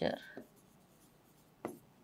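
Stylus writing on an interactive whiteboard screen, quiet, with one short sharp tap about one and a half seconds in. A woman's spoken word trails off at the start.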